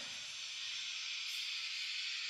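Faint steady hiss: the background noise of the voice recording during a pause, with no other sound.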